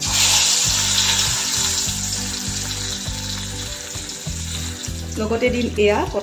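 Hot oil in a cast-iron kadai sizzling as green chillies are dropped in; the sizzle starts sharply and slowly dies down.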